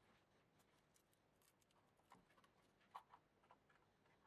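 Near silence, with a few faint clicks of hands handling plastic case parts, two of them close together about three seconds in.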